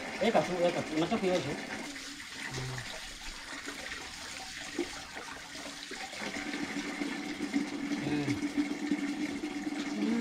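Water running from a plastic storage tank's tap into a container, with a voice briefly at the start and a steady low hum joining in over the last few seconds.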